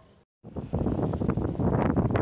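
Wind buffeting the microphone: a dense, crackly rush of noise that starts abruptly about half a second in, after a brief dropout to silence.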